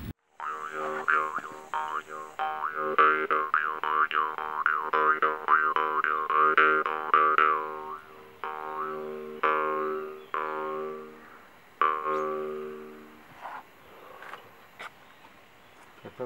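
Jaw harp being played: repeated plucks over one steady drone, with its overtones sweeping up and down, dying away about thirteen seconds in.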